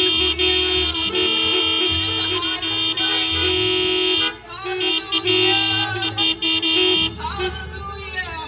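Electronic keyboard holding sustained organ-like chords over a bass line that changes every second or so, playing worship music through a PA. The chords break off briefly about halfway, and a woman's voice comes in over the music near the end.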